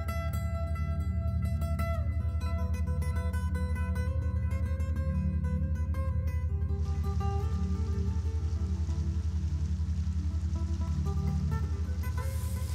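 Background guitar music: plucked notes ringing over a low, pulsing drone. About halfway through, a steady rush of flowing stream water comes in under the music.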